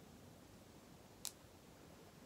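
Near silence in a small room, broken by one short, sharp click a little over a second in.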